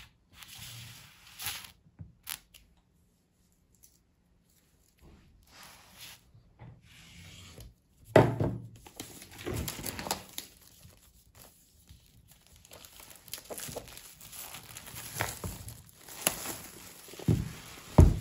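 Clear plastic wrap being torn and peeled off a Mac mini's cardboard box, in irregular crinkling rustles that start and stop, nearly silent for a couple of seconds early on and busier in the second half. A low thump comes near the end.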